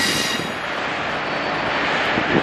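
V/Line N-set passenger carriages rolling away over the station pointwork. Their wheels squeal briefly at the start, fading within half a second, then the wheels rumble steadily on the rails.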